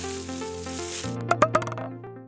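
Short logo jingle: a few stepping notes over a hiss, then three quick knocks close together about a second and a half in, fading out as the animated apple drops.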